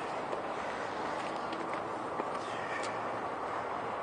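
Steady outdoor city background noise, with a few faint, irregularly spaced taps.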